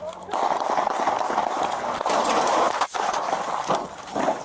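Loud, rough rustling and rubbing on a body-worn camera's microphone as the officer wearing it runs. It cuts out for an instant about three seconds in.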